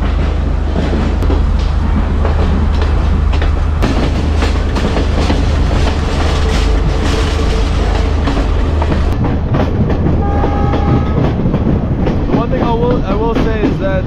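Passenger train moving off and gathering way: a low steady rumble with the clatter of wheels over the rails, heard from an open carriage doorway. A brief steady high tone sounds about two-thirds of the way through, and voices call out near the end.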